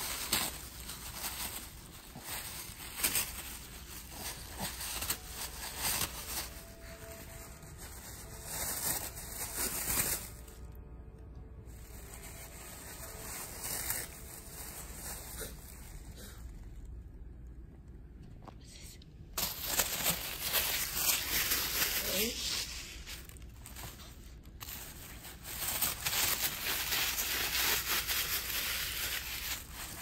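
A Shih Tzu tearing and crinkling thin paper with her teeth, the paper rustling and ripping in irregular bursts.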